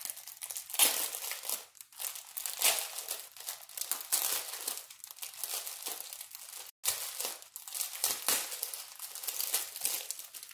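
Clear plastic bag of diamond-painting drill baggies crinkling in the hands as it is handled and sorted through, in irregular rustling bursts, with a very brief break a little before seven seconds in.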